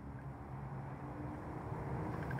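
Steady low hum of a running vehicle engine, growing slightly louder over the two seconds.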